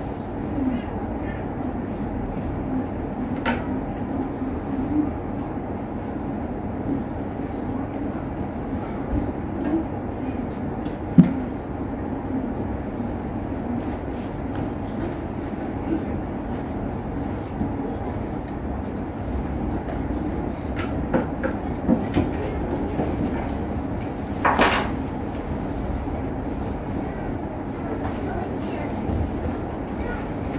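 A priest quietly murmuring the Latin prayers of the Mass over a steady low rumble of room noise. There are a few soft knocks from handling at the altar: a low thump about eleven seconds in and a sharp click about twenty-five seconds in.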